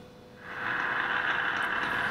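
Radio static hissing from the loudspeaker of a Specific Products Model WWVC receiver, rising about half a second in as the volume is turned up and then holding steady, with a faint steady tone underneath.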